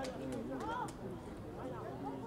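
Faint distant voices calling out at an open-air football ground, a couple of short shouts over steady outdoor ambience.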